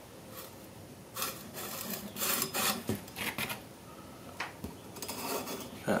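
Dry rubbing and scraping as hands handle and turn an old metal EGR valve tube with worn corrugated heat shielding on cardboard, in several short spells.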